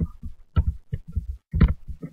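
Computer keyboard being typed on: a quick, irregular run of about a dozen dull keystroke knocks.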